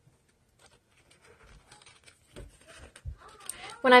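Scissors cutting through scrapbook paper: faint, scattered snips with light paper handling.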